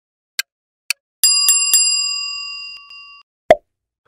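Quiz-game sound effects: two last clock-like ticks half a second apart, then a bell struck three times in quick succession that rings on and fades over about two seconds, and a single short pop near the end, marking the end of the answer countdown.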